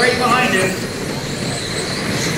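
High whine of electric 1/10-scale RC touring cars' brushless motors and gears as the cars run past, the pitch wavering as they lift and accelerate, over a steady hall din.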